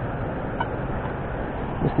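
Steady rushing noise of river water flowing below a dam.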